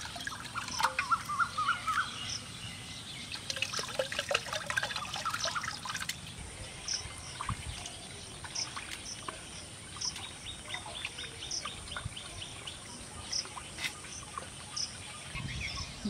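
Water poured from a steel bowl into a metal pot of rice water, trickling and splashing for the first six seconds or so. Birds chirp throughout, with a short high call repeating about once a second after that.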